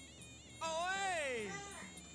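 A long drawn-out vocal "ooh" about half a second in: its pitch rises briefly, then slides down steadily for about a second, a reaction to a high kick landing.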